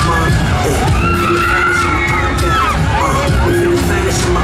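Riders screaming on a Mondial Heartbreaker swinging thrill ride over loud fairground dance music with a heavy bass beat.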